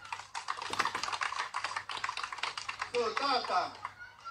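Crowd clapping: a dense, irregular patter of hand claps for about three seconds, giving way to voices near the end.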